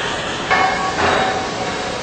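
Carbide tool grinder running with a steady hum, with two sudden knocks about half a second and a second in.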